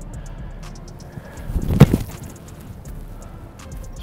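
An American football kicked off a tee: one sharp thud of the foot striking the ball a little under two seconds in.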